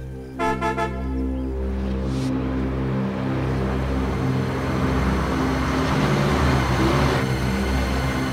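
A bus horn sounds a short burst of toots about half a second in, then a rushing noise swells for several seconds and cuts off suddenly, over a steady low musical drone.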